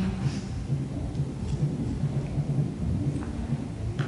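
A steady low rumble, with the energy concentrated in the bass.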